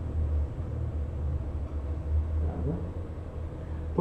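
A low, steady rumble, with a faint brief murmur of a man's voice about two and a half seconds in.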